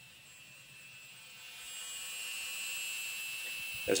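Cordless impact gun slowly revved up like a drill, spinning a Mercedes W124 differential on the bench: a steady whine that builds over about a second and then holds. The differential turns without abnormal noises, unloaded; the only noises come from the impact gun's coupling.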